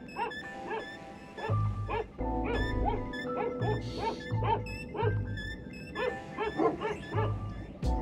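Several flock guard dogs barking repeatedly, roughly two barks a second, over background music.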